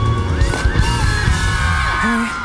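Live rock-pop band music over a concert PA: electric guitar over a heavy bass and drum low end, with gliding high notes from about half a second in.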